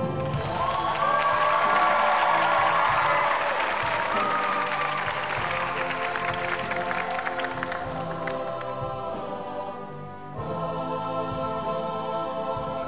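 Audience applauding over a show choir's sustained singing with instrumental accompaniment; the clapping fades out over about eight seconds, and about ten seconds in the choir comes in on a new held chord.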